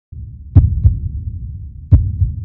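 Heartbeat sound effect: low double thumps over a low rumble, one 'lub-dub' pair about half a second in and the next beginning near the end.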